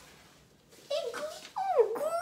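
A young dog whining, with high-pitched whimpers that slide steeply downward, starting about a second in.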